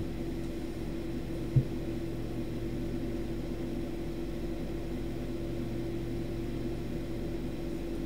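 Room tone in a pause: a steady low hum with a few fixed pitches and faint hiss, with one brief low sound about one and a half seconds in.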